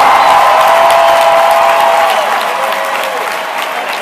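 Large arena crowd applauding and cheering, with whoops over the clapping, the ovation slowly dying down.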